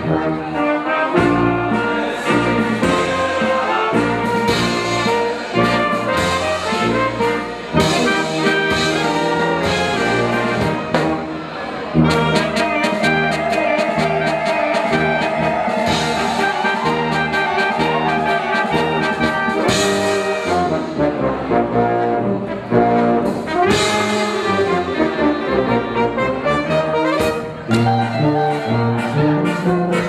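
Brass band playing a lively dance tune, with trumpets carrying the melody over a stepping bass line and a steady beat.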